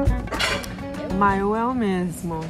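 Upbeat salsa-style background music cutting off right at the start, a brief rush of wind on the microphone, then a woman's voice in one long drawn-out sound, rising and then falling in pitch.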